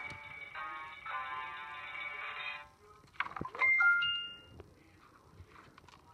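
Tinny electronic music from a LeapFrog Tag reading pen's small speaker, stopping about two and a half seconds in. A few handling knocks follow, then a short electronic chime of three staggered notes from the pen.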